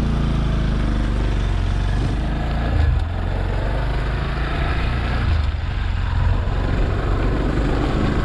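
Motorcycle engine running at a steady pace while riding, with a low even hum and a rush of wind and road noise over it.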